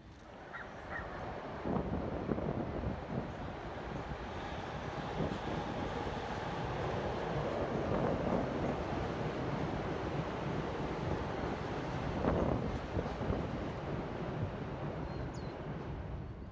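A commuter train running along an elevated railway viaduct: a steady rumble and rattle that builds up in the first couple of seconds and fades away near the end.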